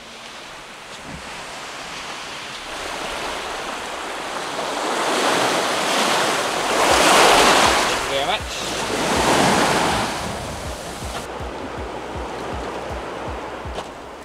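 Sea waves washing onto a sandy shore, swelling loudly twice in the middle, with a soft low thump about twice a second through the second half.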